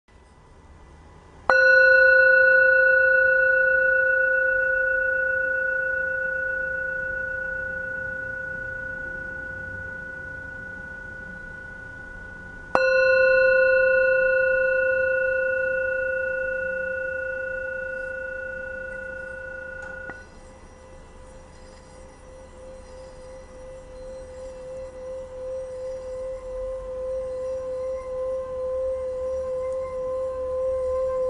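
Small hand-held Tibetan singing bowl tuned to about 519 Hz (C5), struck twice, each strike ringing out in one long, slowly fading tone with several higher overtones. About two-thirds through, the ringing is cut short. A mallet is then rubbed around the rim, drawing a sustained singing tone that grows louder with a steady pulsing wobble.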